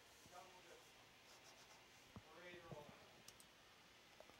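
Near silence, with faint voices twice, about half a second in and again midway, and a few faint sharp clicks in the second half.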